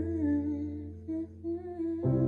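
A woman humming a soft, wavering melody over a sustained low accompaniment chord.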